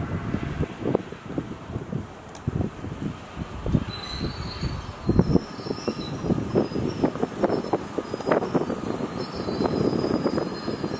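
A slow-moving train of 209 series electric commuter cars hauled by a Kumoya 143 utility car: wheels knocking and clanking irregularly over rail joints and points, with a thin high wheel squeal that sets in about four seconds in and holds through the second half.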